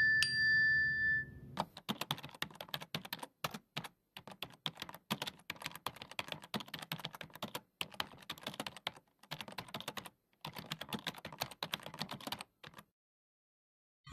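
A short chime, then a computer-keyboard typing sound effect: rapid, irregular runs of key clicks with a few brief pauses, as text is typed out. The typing stops about a second before the end.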